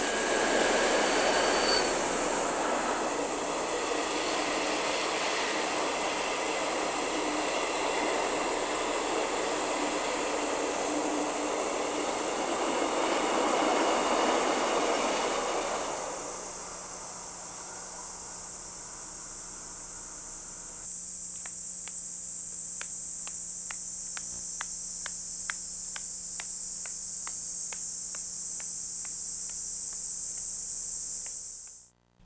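A passenger train running past on the track, its cars rumbling along and fading away about sixteen seconds in. A steady high insect drone runs under it and carries on after it is gone, with faint regular ticking near the end.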